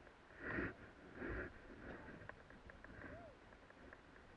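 Two short breath-like rushes close to the microphone, a little under a second apart, then quieter snow-and-wind background with a brief faint squeak near the end.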